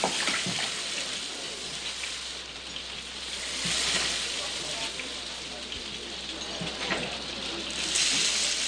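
Steady sizzling hiss of food frying on a kitchen stove, with a few light knocks of dishes.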